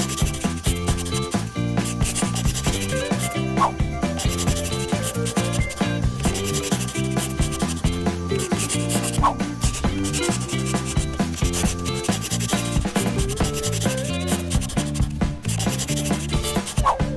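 Crayon scribbling on paper in quick, continuous back-and-forth strokes as a drawing is coloured in, over a light background tune.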